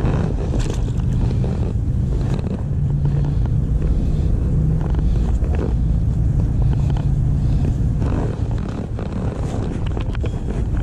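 A steady low engine-like drone, with close rustles and scrapes as a stringer rope is handled.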